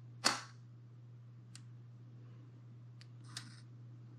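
Humira autoinjector pen firing: a sharp spring-loaded click about a quarter second in as the injection starts. Faint ticks and a brief soft rush of noise follow near the end.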